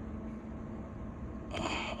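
Steady low background room noise, with a short audible intake of breath about a second and a half in.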